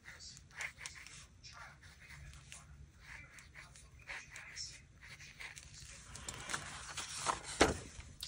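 Fine-tip marker drawing short squiggles on paper: quiet, scratchy strokes, with a louder rustle or knock of the paper near the end.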